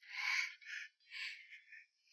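A young man crying: several short, breathy sobs and sniffs with silence between them.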